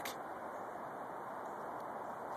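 Steady, even hiss of distant interstate traffic from I-285, heard through the woods.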